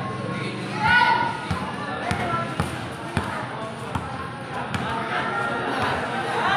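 A basketball being dribbled on a concrete court: single bounces about once a second, with voices of onlookers around it.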